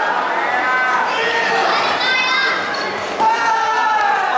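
People shouting during a karate bout in a sports hall: several drawn-out, high-pitched shouts, some rising, over the general murmur of the hall.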